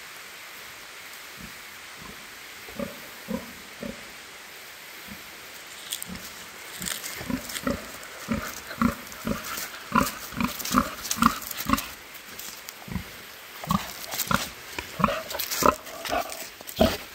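A pig grunting: short, separate grunts, only a few in the first seconds, then coming quickly, about two a second, and getting louder as it walks up close.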